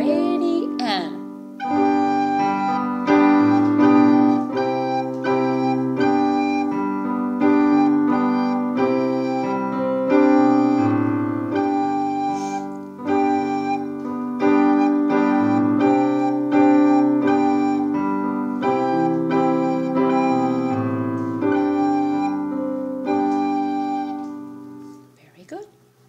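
Piano accompaniment in a steady beat of about two notes a second, with a soprano recorder playing a simple tune built on the note G. The music stops shortly before the end.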